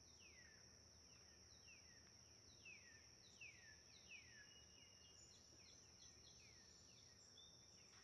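Very faint nature ambience: a steady high-pitched insect drone with short downward-sliding chirps, two or three a second.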